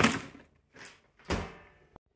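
Pedal bin taking a paperback book thrown into it. There is a sharp bang right at the start, a small knock, then a second heavier bang about 1.3 seconds in as the metal lid slams shut.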